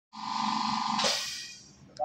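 A loud, steady electronic buzzing tone with a rapid pulse. About a second in, a sharp hiss cuts across it, and then the sound fades away.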